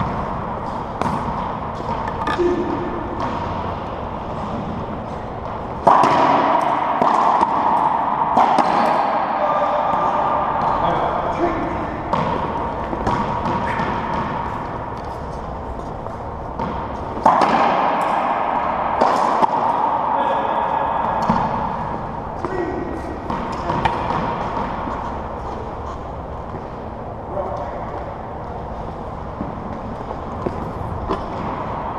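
Racquetball play in an enclosed court: the rubber ball cracking off the walls and racquet strings in repeated sharp hits that ring and echo off the walls, with louder, busier stretches starting suddenly about a third of the way in and again past the middle.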